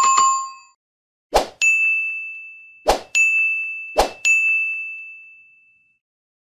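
Notification-bell chime sound effects from an animated subscribe end screen. A short bell ding at the start, then three times a brief whoosh followed by a bright ringing ding, about 1.3 seconds apart, with the last ding ringing out.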